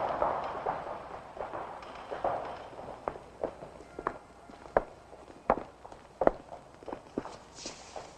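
Slow, evenly paced footsteps clicking on a hard surface, about one step every three-quarters of a second. They are clearest in the second half, after a softer rustling start.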